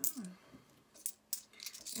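Pound coins clicking against each other in the hand and being set down on a fabric desk mat: several sharp clicks, a few in quick succession in the second half.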